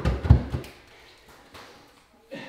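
Bare feet thudding on timber stairs as a man runs up them: a few heavy footfalls in the first half-second, then fading quickly as he climbs away.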